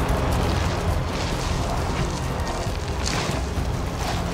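Steady deep rumble with a hissing wash of blowing sand in a sandstorm.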